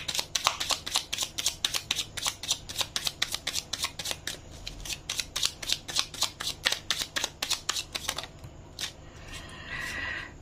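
A deck of oracle cards being shuffled by hand: a rapid run of soft card slaps, about six a second, that stops about eight seconds in.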